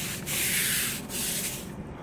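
Stiff-bristled brush scrubbing wet, bleach-covered natural stone paving: about three long strokes of bristles rasping on stone, stopping just before the end.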